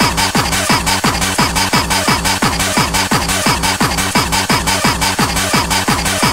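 Fast electronic dance music mixed from vinyl turntables. A pounding kick drum hits about three times a second.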